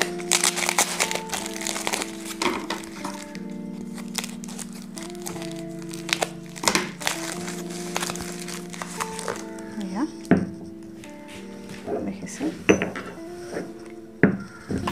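Brown paper wrapping crinkling and rustling as a stone pestle is unwrapped by hand, with a few sharper knocks near the end, over background music with steady held notes.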